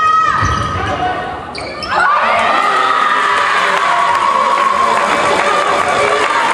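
Volleyball rally at the net in a sports hall: ball strikes and shouting in the first second, then from about two seconds in a sustained mass of high-pitched shouting and cheering from players and spectators as the point ends, echoing in the hall.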